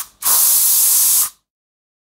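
Spray hiss sound effect: the tail of one short burst right at the start, then a second burst about a second long that stops abruptly.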